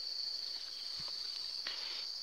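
Steady high-pitched insect trill running on without a break, with two faint clicks, about a second in and near the end.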